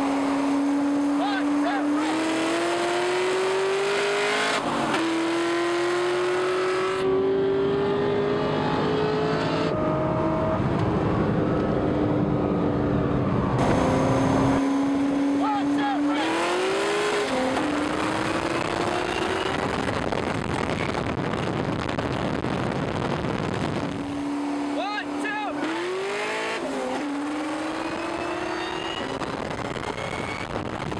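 A Whipple-supercharged 2003–04 Mustang SVT Cobra V8 accelerating hard at full throttle in highway roll races, its engine note climbing steadily in pitch and dropping back at each upshift, over several runs cut together.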